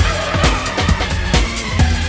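Oldschool house and rave dance music from a DJ mix: a steady kick drum on every beat, a little over two beats a second, over heavy bass and bright hi-hats.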